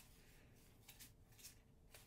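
Near silence, with faint, brief rustles as a bundle of embroidery floss skeins on card tags is leafed through by hand.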